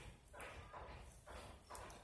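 Faint, soft rhythmic rubbing, about two strokes a second: fingers massaging a wet skin product over the face.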